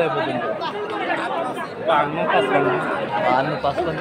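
People talking over one another, with the chatter of a crowd.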